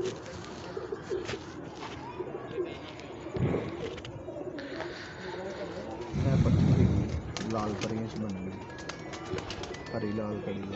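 Domestic pigeons cooing around a rooftop loft, with a loud, low rumble of handling noise on the microphone lasting about a second, starting about six seconds in.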